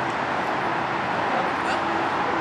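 Steady background noise with no distinct event, with faint voices beneath it.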